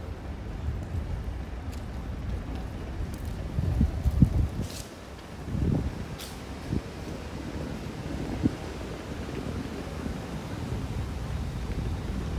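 Outdoor city street sound: a steady low rumble of road traffic with wind buffeting the microphone. A few louder thumps and swells come about four to seven seconds in.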